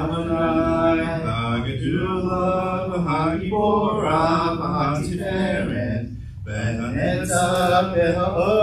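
Hebrew liturgical chanting: sung phrases in a slow, melismatic line, broken by short breaths about two, three and a half, and six seconds in.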